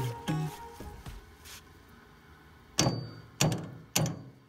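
Background music fading out, then a claw hammer striking the nut end of a rusted, seized bolt three times, each blow a sharp metallic clank, the first with a brief ring. The blows are driving the stuck bolt out of a wheelbarrow handle.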